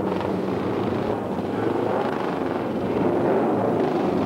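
Several old racing motorcycle and sidecar engines running together, a dense, steady engine noise that grows a little louder near the end.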